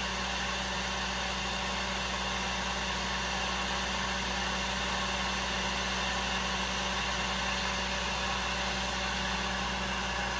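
Electric heat gun running steadily, its fan blowing with a constant motor hum, heating a freshly powder-painted jig head.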